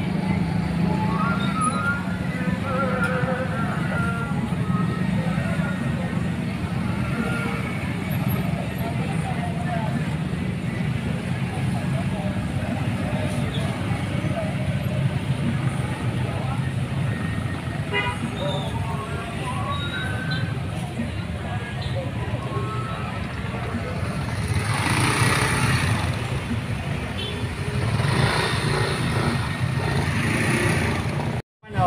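Dense slow-moving street traffic: motorcycles and cars running in a crowded street, a steady engine drone with people talking around it. It swells louder for a couple of seconds near the end.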